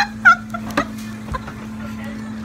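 Young women laughing in a few loud, quick bursts that die down within the first half second, over a steady low hum.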